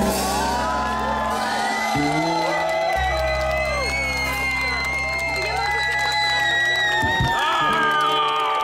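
A live band with guitars, saxophone and trombone holds a long closing chord while the crowd cheers and whoops. The held notes cut off about seven seconds in, leaving the crowd cheering.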